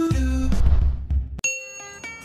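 Intro-jingle music with heavy bass that cuts off about a second and a half in, followed by a single bright chime that rings on and fades.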